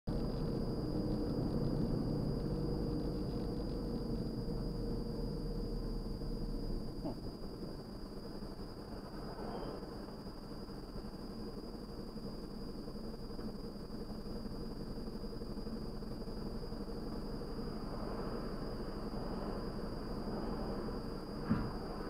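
Car engine and road noise heard inside the cabin, the engine note dropping away after several seconds as the car slows and sits idling in traffic. A steady high-pitched whine runs underneath.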